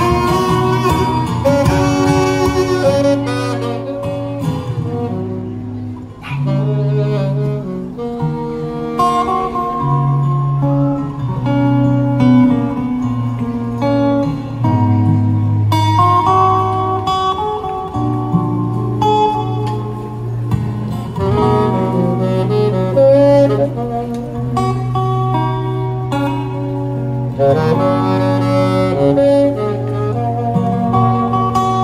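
Alto saxophone playing a slow melody of long held notes over an acoustic guitar accompaniment, heard through a small PA.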